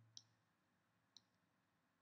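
Near silence with two faint computer mouse clicks about a second apart.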